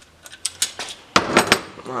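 Small metal parts of a freshly reassembled centrifugal clutch clicking and clanking as it is handled: a run of light clicks, then louder clanks with a short ring just past the middle.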